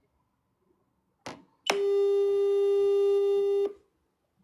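A short click, then a loud, steady, buzzy electronic tone held for about two seconds and cut off sharply.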